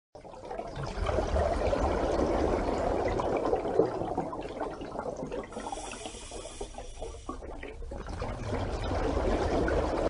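Water sound: a noisy wash of water that comes up within the first second, drops back in the middle, and builds again near the end.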